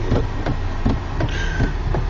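Road noise inside a moving car's cabin: a steady low rumble of engine and tyres on a wet road, with a brief higher hiss about one and a half seconds in.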